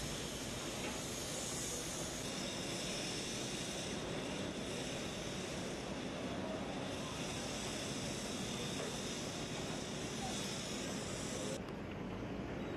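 Steady, hissy outdoor noise from a street work site where excavators are running, with no distinct event standing out. Near the end the high hiss drops away suddenly.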